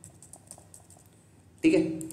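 Computer keyboard typing: a quick run of faint key clicks as digits are keyed in, stopping about one and a half seconds in.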